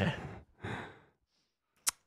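A man's short laugh trailing off into a breathy exhale, then quiet and a single sharp click near the end.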